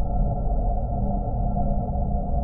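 Ambient drone music built from processed factory field recordings: a steady, muffled drone with a deep rumble under a few held tones, unchanging throughout.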